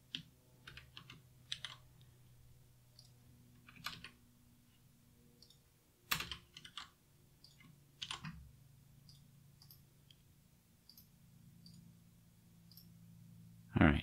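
Computer keyboard typing: scattered key clicks in short bursts a few seconds apart, over a faint steady low hum.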